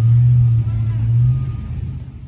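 Low, steady engine rumble of a nearby motor vehicle at a curbside pickup lane. Its pitch edges up slightly, then it fades near the end.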